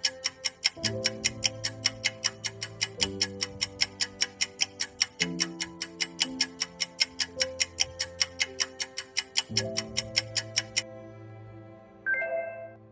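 Countdown-timer tick sound effect: fast, even clock-like ticks, about five a second, that stop about a second before the end, over soft sustained background music chords.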